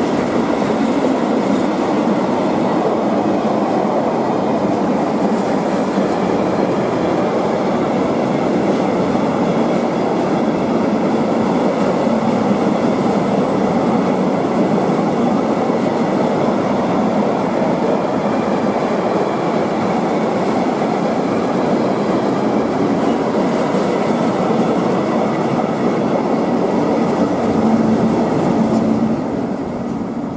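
Long freight train of tank wagons rolling past on the rails, a steady loud noise of wheels and wagons. It falls away as the last wagons pass near the end.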